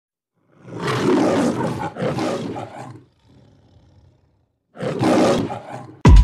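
A lion's roar played as an intro sound effect: two long roars back to back, a short quiet gap, then a third roar near the end.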